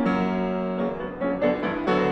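Steinway concert grand piano played solo: a chord struck at the start rings on, with fresh notes struck about a second and a half in and again near the end.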